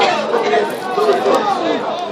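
Several football spectators talking and calling out over one another, a loud steady chatter of voices close by.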